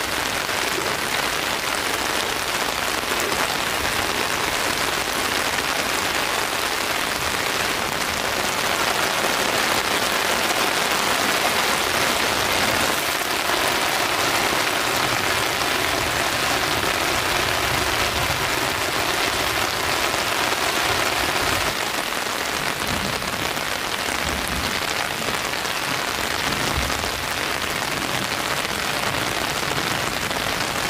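Steady rain falling, an even hiss that never pauses.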